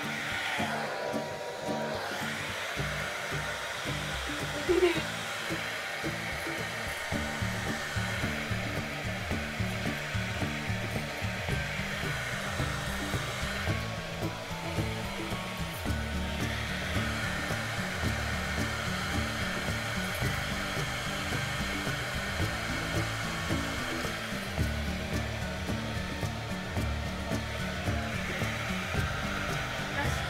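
Hand-held hair dryer blowing steadily, with music playing underneath.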